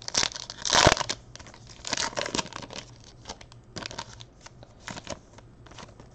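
Baseball cards and their packaging handled by hand: a run of short crinkling and rustling noises, the loudest just under a second in, with further ones about every second after.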